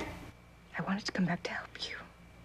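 A person whispering a short phrase, starting about three quarters of a second in and lasting about a second.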